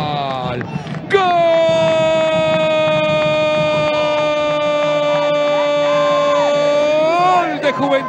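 Football commentator's drawn-out goal shout: a long held 'goool' on one steady high pitch for about six seconds, after an earlier held cry falls in pitch and breaks off just before the first second.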